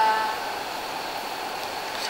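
A girl's voice finishing a word, then a pause filled with steady background hiss and a faint constant high whine.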